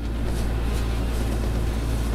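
Tractor engine running steadily while powering a Mzuri Razorback rotor-head hedgecutter: a constant low drone heard from inside the cab.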